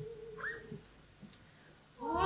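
A soft sustained note at one steady pitch from an opera performance, ending under a second in, with a brief rising chirp about half a second in. The rest is a quiet lull.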